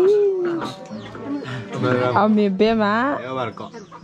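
People talking.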